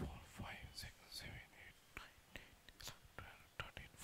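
A man whispering or muttering faintly under his breath, mostly in the first two seconds, with a few faint clicks later on.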